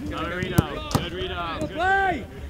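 Men's voices calling out over a football drill, with two sharp thuds of a football being kicked, a little under half a second apart, about half a second in.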